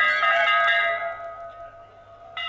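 A bell-like chime from a news-channel music sting rings on after being struck and fades away over about a second and a half.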